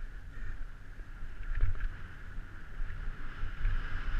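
Downhill mountain bike ridden fast over a rough dirt trail, heard from a helmet camera: uneven low rumbling and wind buffeting on the microphone, with a steady higher hiss over it and a hard jolt about a second and a half in.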